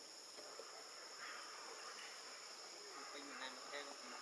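Steady high-pitched drone of forest insects, faint and unbroken.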